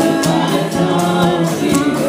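Live band playing a song: a woman singing over electric bass, strummed acoustic guitars and a drum kit keeping a steady beat.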